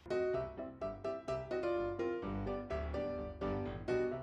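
Background music: a light keyboard tune of short, sharply struck notes, about four a second.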